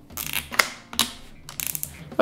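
Nylon cable tie pulled through its ratchet lock: a couple of separate clicks, then a quick run of rapid clicks near the end.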